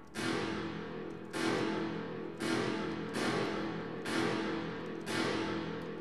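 Synth chord stab repeating roughly once a second, each hit fading into a long reverb tail from Ableton's Hybrid Reverb. The reverb's tone shifts as EQ bands on it are boosted and cut.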